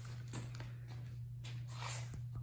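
A steady low hum with a few faint rustles and light knocks as the phone is moved around.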